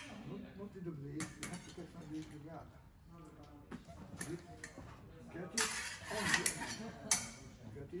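Steel épée blades clinking and scraping against each other in a series of light, irregular metallic contacts during blade work, busiest in the second half.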